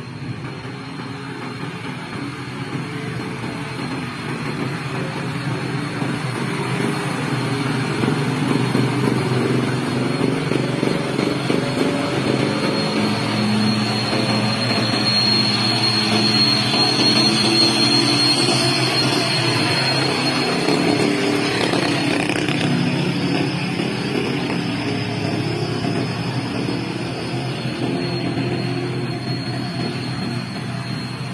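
Hino box truck's diesel engine pulling hard up a steep grade as it passes close by, growing louder to a peak about halfway through and then fading. A thin high whine rides on it at its loudest. Other uphill traffic runs underneath throughout.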